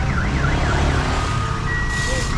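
Electronic siren wailing in a fast yelp, its pitch swinging up and down about four times a second, then fading out about a second in, over a steady low engine rumble. Near the end a steady high tone begins.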